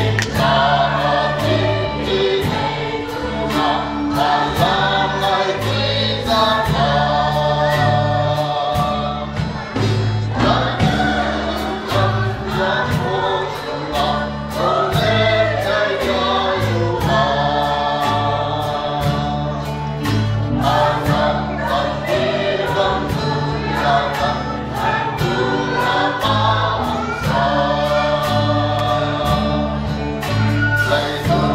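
A mixed choir of women and men singing a praise song together over instrumental accompaniment with a steady beat and a moving bass line.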